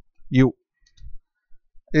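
A voice says "you", followed by a few faint clicks of computer keys as the word is typed.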